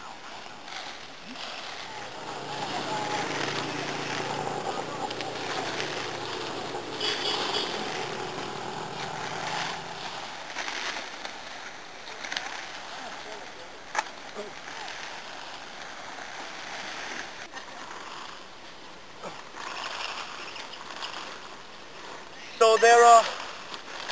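Dense black velvet bean foliage rustling and swishing as people wade through it, hand-broadcasting rice seed into the ground cover. Louder for the first half, with one sharp click about midway.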